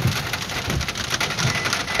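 Rain pattering on a car's roof and windows, heard from inside the cabin as a dense, steady run of small ticks.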